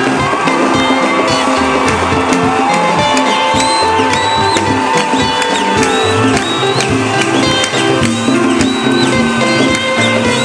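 Church worship band playing an instrumental passage between the refrain and the next verse of a hymn: guitar, bass and drums, with a long held high note in the middle and quick, looping high notes after it.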